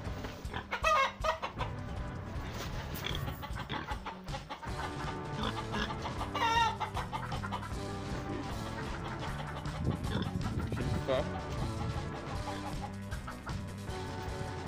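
Chickens clucking, a few wavering calls, the clearest about a second in and again around six and a half seconds in, over steady background music.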